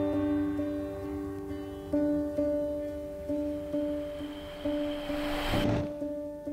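Slow instrumental music: single notes sound one after another, roughly twice a second, over a held low note. Near the end a hissing swell rises for about a second, then cuts off suddenly.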